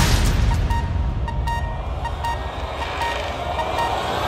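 Suspense trailer score and sound design: a low rumbling drone with a short high tone pulsing about every three-quarters of a second, dipping in the middle and swelling again near the end.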